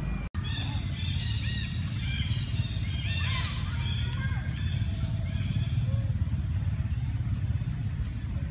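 Monkeys calling in a run of short, high, arching squeaks and chirps that stop a little past halfway. Under them runs a steady low rumble, and the sound cuts out for an instant just after the start.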